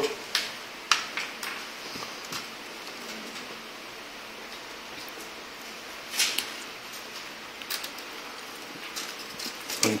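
Scattered light clicks and taps of a disassembled HP Pavilion dv6000 laptop's plastic base and motherboard being handled as the board is worked free, with a short cluster of knocks about six seconds in. Faint steady hiss underneath.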